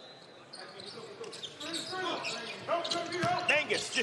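Basketball sneakers squeaking on a hardwood court during live play, with the hall's background sound. Quiet at first, the squeaks grow busier from about two seconds in as the players move for the rebound.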